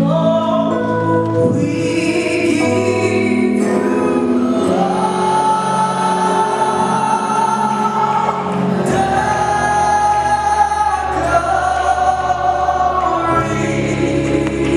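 Live gospel worship song: a group of singers backed by keyboard and electric bass guitar, holding long sustained notes.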